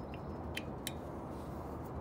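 Low steady background hum and hiss with three faint, short clicks.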